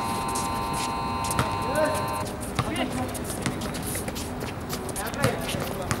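Sounds of a basketball game on an outdoor court: scattered players' voices and shouts, running footfalls and ball bounces. A steady tone of several pitches sounds at the start and cuts off about two seconds in.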